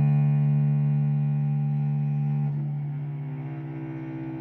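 Solo cello playing a long, sustained bowed note rich in overtones; about two and a half seconds in it changes to a new, quieter note.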